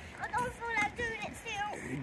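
Faint voices of other people talking and calling at a distance, with no close speech.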